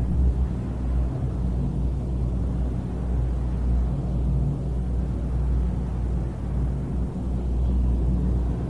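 Steady low electrical hum with a low rumble, unchanging throughout.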